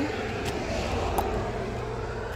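Steady low rumble of road traffic going by, easing off near the end, with a couple of faint clicks.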